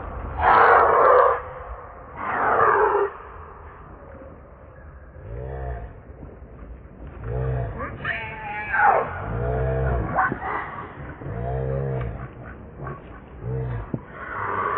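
Macaques calling during a scuffle: two loud, high-pitched screams in the first three seconds, wavering squeals about eight seconds in, and a series of short, low, grunting calls repeated about every two seconds through the second half.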